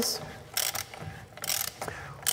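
A drill bit boring out a worn piston bore in the aluminium valve-body plate of a Mercedes 7G-Tronic mechatronic unit, an uneven mechanical cutting sound with a few short sharper bursts. The bore is being widened because of pressure loss between the housing and the piston, so that an oversize repair piston can be fitted.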